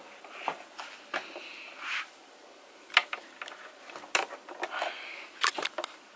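Rustling and scattered sharp clicks and knocks of a person moving about and handling things in a small room. The loudest click comes about halfway through, and a quick cluster of them comes near the end.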